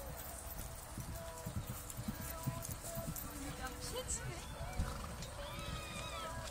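A pony cantering on grass, its hooves thudding dully and unevenly on the turf, with voices in the background. Near the end there is a higher call that rises and falls.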